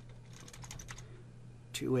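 Computer keyboard keys tapped in a quick run of short clicks, deleting text a letter at a time; then a voice starts near the end.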